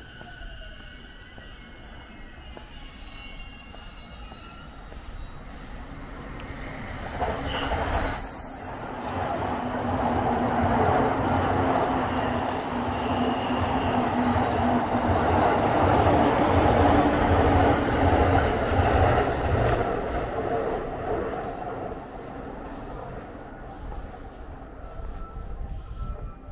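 An electric train passing on the tracks close by. It grows louder from about a quarter of the way in, runs loud with a steady low hum for about ten seconds, then fades.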